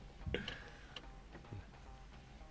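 Faint clicks in a pause: one about a third of a second in, followed by a brief faint tone, and another softer click later.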